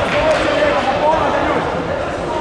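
Indistinct voices calling out and talking in a large sports hall, with a few light thuds.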